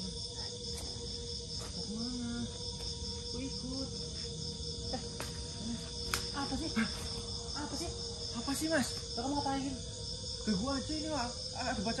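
Night insect chorus, crickets chirring in a steady, fast-pulsing high drone, with faint indistinct voices murmuring now and then.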